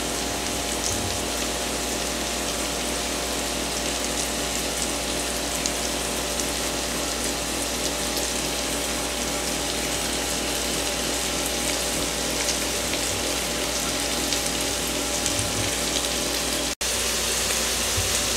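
Bacon, onion and sliced mushrooms sizzling steadily in fat in an enamelled cast-iron Dutch oven. The sound cuts out for an instant near the end.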